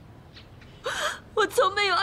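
A woman crying: a sharp tearful gasp about a second in, then a shaky, wavering sob as she starts to speak through her tears.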